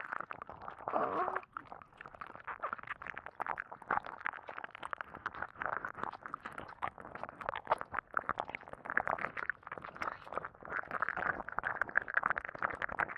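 Wet, squelching mouth and squish sounds close to the microphone, a dense irregular run of small clicks and smacks in ear-play ASMR.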